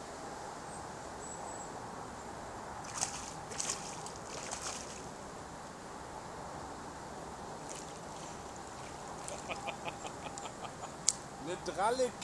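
Steady outdoor background noise at the lakeshore, with a few short splashes about three to four and a half seconds in and a quick run of light ticks near ten seconds; a brief voice comes in at the very end.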